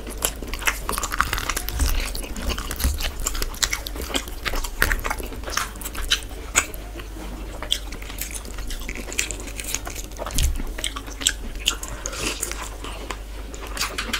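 Close-miked chewing and biting of spiced chicken masala and bhuna kichuri, a dense run of quick wet mouth clicks and crackles, with hands pulling the chicken apart.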